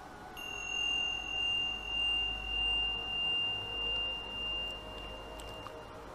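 A single high, steady ringing tone starts about half a second in and holds for some five seconds, like a struck chime or tuning fork. Under it a lower hum swells and fades about once a second.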